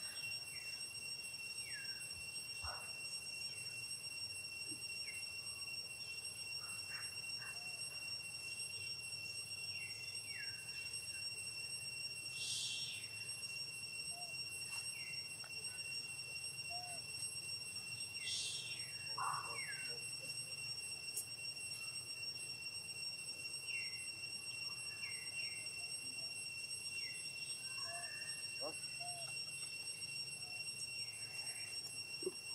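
Steady high-pitched drone of insects, several unbroken whining tones together, with scattered short high chirps over it and two louder chirping bursts about a third and two-thirds of the way through.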